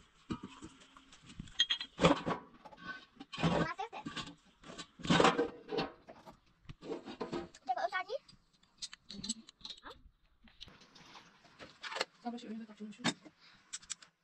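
People talking in short, irregular bursts, with some household clatter.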